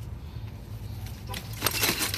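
A few sharp metallic clicks and rattles from the tube frame of an InStep collapsible bike trailer being handled, clustered in the second half, over a steady low hum.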